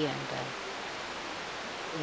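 A woman's voice says one short word, then a pause holding only a steady, even hiss of background noise.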